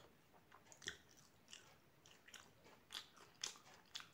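Faint, close-up mouth sounds of chewing the last mouthful: a handful of soft, short clicks and smacks spread across the few seconds.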